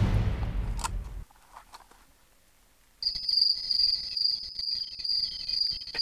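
Background music dying away over the first second, a short silence, then from halfway through a steady, high-pitched trill of night crickets.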